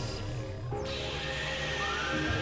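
Experimental electronic synthesizer music: layered steady drones over a low pulsing rumble, with a hissy noise layer that cuts out and returns just under a second in. Near the end a sliding tone rises in pitch.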